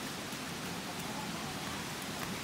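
Steady rushing hiss of a distant waterfall, a continuous even noise of falling water.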